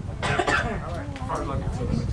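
A person coughing about a quarter second in, followed by indistinct voices, over a low rumble of wind on the microphone.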